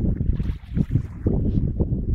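Wind buffeting the microphone: a loud, uneven low rumble that surges and dips.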